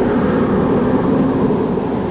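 A steady, low rushing rumble at an even level, with no sharp events.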